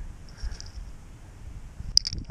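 Uneven low rumble of wind on the microphone, with a faint steady high hiss and one sharp click near the end.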